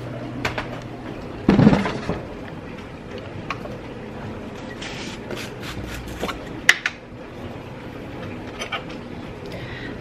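Kitchen handling sounds: scattered small clicks and light knocks as a screw-top lid is twisted off a jar of nut butter. There is a brief louder rustle about one and a half seconds in and a single sharper click about two-thirds of the way through.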